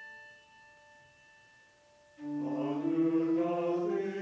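Brass handbell ringing out and fading, followed about two seconds in by a small choir starting to sing a slow, sustained line that steps upward in pitch.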